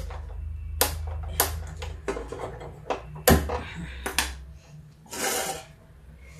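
Kitchen handling sounds: a few separate sharp clicks and knocks of metal against the steel gas stove and utensils, the loudest about three seconds in, with a short rustling hiss near the end.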